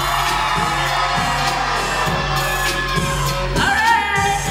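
A pop song performed live with a steady beat of about two a second over a sustained bass, with singing rising in near the end.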